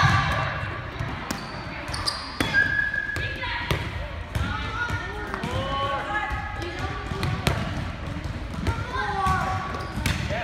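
Volleyballs being hit and bouncing on a gym floor: irregular sharp smacks and thuds, with several voices talking in the background.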